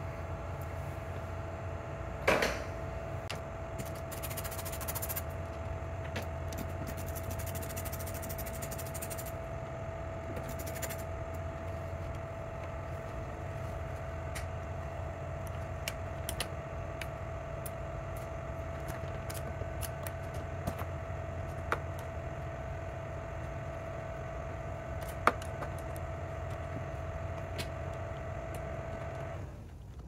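Small metal clicks and clinks of an open-ended wrench and a magnetic pickup tool working a 10 mm mounting nut on a car's door-mirror mount, with a sharper click about two seconds in and brief scraping stretches. A steady hum with a faint whine runs underneath and cuts off just before the end.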